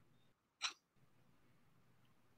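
Near silence, broken once a little over half a second in by a single brief, sharp sound from a person.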